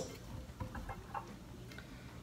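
Faint light clicks and ticks of a plastic creamer bottle's cap being twisted open.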